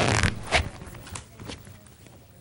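A short scraping rustle at the start, then a sharp knock about half a second in, followed by faint scattered handling noises from people moving about a room.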